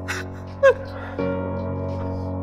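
A man crying: a sharp breath in, then a short sob falling in pitch a little over half a second in, the loudest sound here. Slow, sustained backing music plays underneath.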